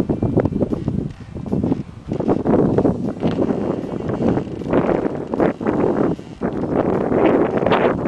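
Wind buffeting the camera microphone in uneven gusts, a rumbling noise that surges and drops from moment to moment.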